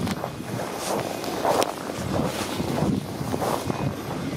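Wind buffeting the microphone, with irregular crunching footsteps on packed snow as the camera-holder walks.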